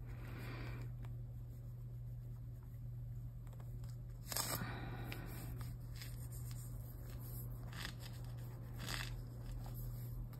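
Faint rubbing of fingertips spreading acrylic paint across a paper journal page: a few soft, brief rubs, the clearest about four seconds in, over a steady low hum.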